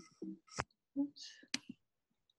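Faint, brief voice sounds, low and breathy, with two sharp clicks about half a second and a second and a half in.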